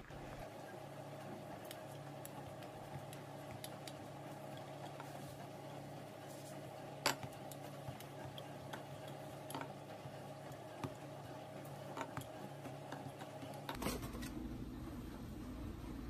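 Faint kitchen handling sounds over a steady low hum: scattered light clicks and taps, with one sharper tap about seven seconds in, from biscuit dough being worked by hand. Near the end the background changes to a louder low rumble.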